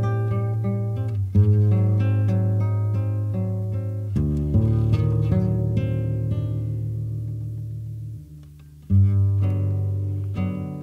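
Instrumental music: acoustic guitar picking notes over deep sustained bass notes. It dies down about eight seconds in, and a fresh chord comes in about a second later.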